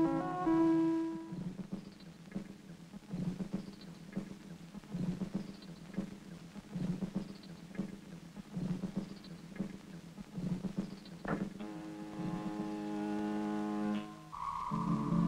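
Early-1960s electronic soundtrack music and effects. A held electronic chord of several steady tones cuts off after about a second. Then comes a slow, uneven pattern of soft knocks with small falling bleeps about once a second, and another held electronic chord starts near the end.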